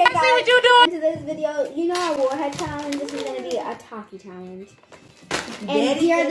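Children's voices talking, with no words made out, and a short pause about five seconds in.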